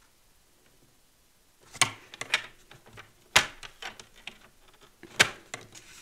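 Plastic clicks and knocks from a paper trimmer as cardstock is lined up and its clear guide arm is set down on the sheet. There is a cluster of sharp clicks about two seconds in, and the loudest single clacks come about three and a half and five seconds in.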